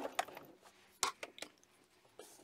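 Domestic sewing machine stitching cuts off at the start, then a few small clicks and handling sounds at the machine, the sharpest about a second in.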